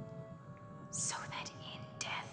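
Hushed whispering, with a sharp hissing sibilant about a second in, over faint sustained music tones.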